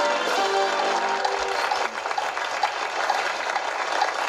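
Game-show theme music with sustained pitched notes ends about a second in, giving way to steady studio audience applause.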